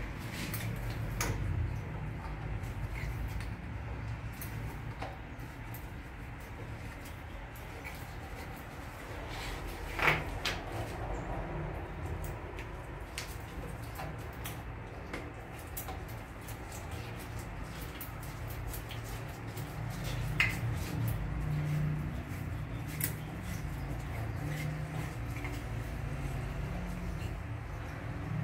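Scattered small clicks and knocks of plumbing fittings being handled at a toilet cistern's water supply connection, with two sharper knocks about ten and twenty seconds in, over a steady low rumble.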